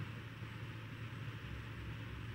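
Faint room tone between speech: a steady low hum with light hiss, without distinct events.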